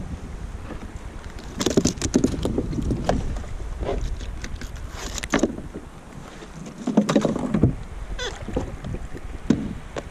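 Low rumble of wind on an action camera's microphone, with repeated short clatters and knocks as fishing gear and a caught fish are handled on a plastic kayak.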